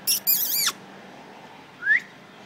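A puppy whining: a high-pitched wavering whine about half a second long right at the start, then a short rising squeak near the end.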